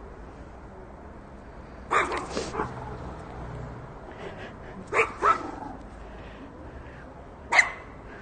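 Chihuahua barking in short sharp yaps: a quick run of barks about two seconds in, two more about five seconds in, and a single loud one near the end, over a steady low background noise.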